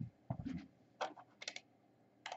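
A few light, irregularly spaced clicks and taps of a computer keyboard being pressed close to the microphone.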